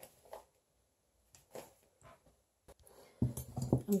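Scissors and yarn being picked up and handled: a few faint, short clicks and rustles in near quiet, with a louder low sound near the end.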